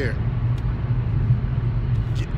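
Steady low rumble and hiss of a car's cabin noise, with no change through the pause.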